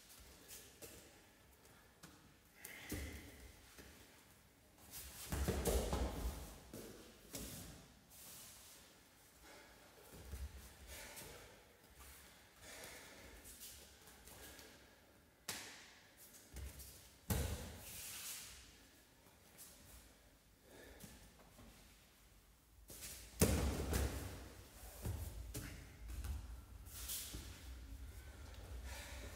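Bodies thrown down onto padded gym mats during repeated takedowns: three heavy thuds, the loudest a little before the end, with softer scuffs and shuffling of bare feet on the mat between them.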